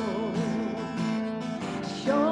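Woman singing with an acoustic guitar: she holds a note with wide vibrato that ends about a second in, and the strummed guitar carries on alone.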